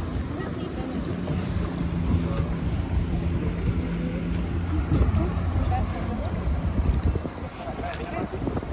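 Wind buffeting the microphone over the wash of canal water around a rowed wooden ferry boat. A passing motorboat's engine adds a steady low hum for the first five seconds or so. Indistinct voices of passengers are mixed in.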